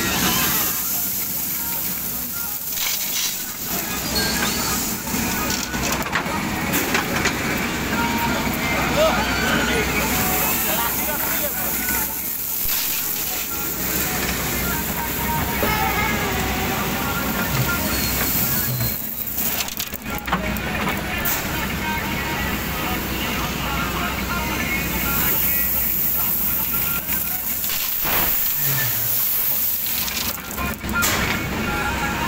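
JCB 3DX backhoe loader's diesel engine running under load as its front bucket scoops 20 mm stone and tips it into a metal tractor trolley, the gravel rattling and crunching as it pours.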